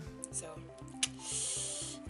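A breathy hiss lasting about a second, starting about a second in, over background music with a steady low beat.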